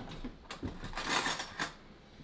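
Metal kitchen utensils clattering and clinking in a few quick rattles as someone rummages for a spoon.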